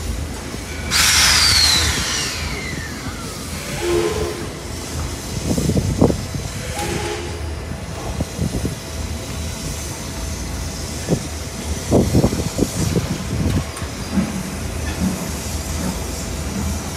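Steam locomotive letting off steam in a loud hiss about a second in, then standing with a low rumble and a few heavy knocks and clanks.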